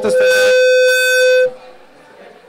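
Loud public-address feedback: a steady, horn-like howl from the hall's sound system that holds one pitch for about a second and a half, then cuts off suddenly. It is the sign of the handheld microphone feeding back through the stage speakers.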